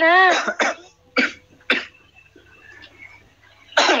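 A person coughing: a few short coughs in quick succession within the first two seconds.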